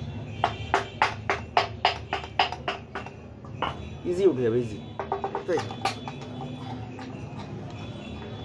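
A quick run of about ten sharp knocks, roughly four a second, as the gearbox housing of a Saw Master SWM-195 16 kg demolition hammer is struck through a wooden stick to free the casing. A few scattered knocks follow, and there is a short voice-like sound about four seconds in.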